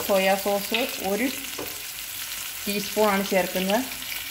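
Sliced vegetables stir-frying in oil in a metal kadai, sizzling. A spatula scrapes against the pan in runs of short, pitched squeaking strokes, with a brief pause in the middle.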